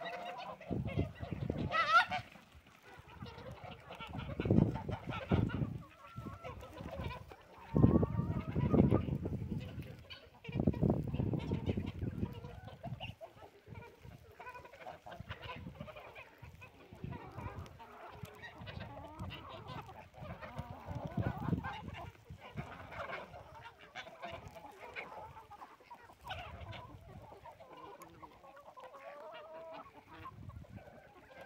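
A mixed flock of chickens and ducks feeding, with clucks and other bird calls scattered throughout. Several bursts of low rumble on the microphone come in the first dozen seconds and are the loudest sounds.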